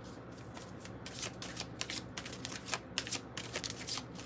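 A deck of Kryon oracle cards being shuffled by hand, the cards slipping against one another in a quick, irregular run of soft clicks.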